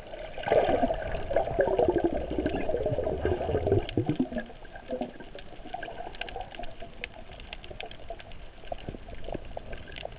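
Underwater recording of moving water: bubbling and gurgling for the first few seconds, then a quieter wash of water with scattered faint clicks.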